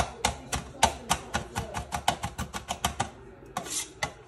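Kitchen knife rapidly chopping onion into small pieces: a run of quick, sharp taps of the blade, faster in the middle, with a short rasp near the end.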